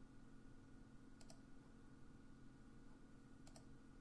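Near silence with a faint steady room hum, broken by two soft computer mouse clicks, about a second in and again near the end, each a quick press-and-release double click.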